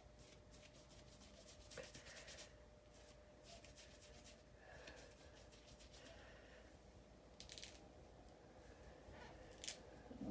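Near silence: room tone with a faint steady hum and a few faint, scattered clicks and rustles of handling.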